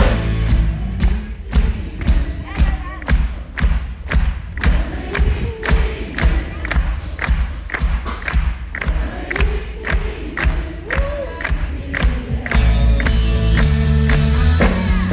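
Concert crowd clapping along in time, about two claps a second, over a bass-drum beat, with crowd voices singing and shouting along. The full band comes back in near the end.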